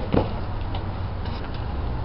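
Steady low background rumble with a few faint ticks and no voices.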